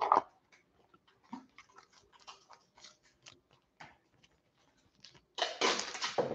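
Football trading cards being handled: many small, irregular clicks and rustles of cards sliding and flicking past one another, with a sharp card snap at the start and a longer, louder rustle near the end.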